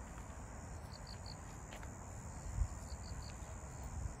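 Insects chirping in the grass: short chirps in groups of three or four about every two seconds over a steady high-pitched trill, faint, with a low rumble underneath and a brief thump about two and a half seconds in.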